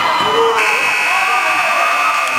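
Basketball scoreboard buzzer starting about half a second in and holding one steady tone, over crowd voices in the hall.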